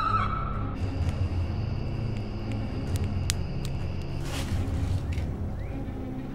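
A drawn-out scream of "No!" fades out within the first second, giving way to a low rumbling drone of horror-trailer sound design. A few sharp ticks come around the middle, and a brief rush of noise comes about four seconds in.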